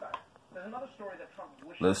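Speech only: a quieter voice talks in the background, then a man starts speaking louder near the end.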